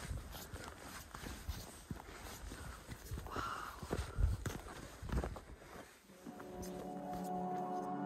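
Footsteps on dry grass and rocky ground, an irregular run of crunches and thumps. About six seconds in, ambient music of long held tones comes in.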